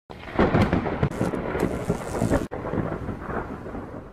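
Loud thunder-like rumbling and crackling noise, broken by a sudden brief gap about two and a half seconds in, then fading toward the end.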